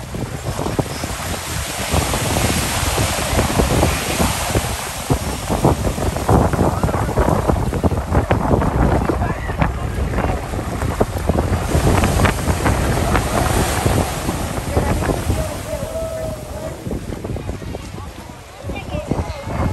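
Ocean surf washing and breaking close by, with wind buffeting the microphone; the wash swells for most of the stretch and eases off near the end.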